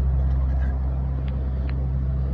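A steady low machine hum, with two faint short ticks in the second half.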